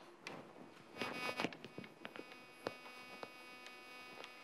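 Chalk writing on a blackboard: short scratchy strokes and a few sharp taps as symbols are written, the longest stroke about a second in, over a faint steady electrical hum.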